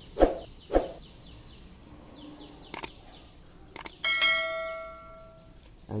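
Two sharp clicks near the start, then small paired clicks, and about four seconds in a single bell ring: one clear tone with overtones that fades out over about a second.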